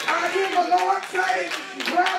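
Hand clapping from a church congregation, sharp claps a few times a second, with a voice going on over it.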